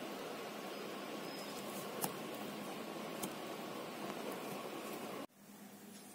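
Steady hiss of room noise with a faint hum, and a few faint clicks as flat plastic weaving strands are handled. The noise cuts off abruptly about five seconds in.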